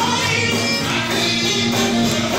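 Live gospel singing: several voices in harmony at microphones, backed by a band with a steady beat.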